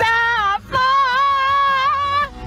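A high voice singing: a short note, then a long held note with a slight waver starting about three-quarters of a second in.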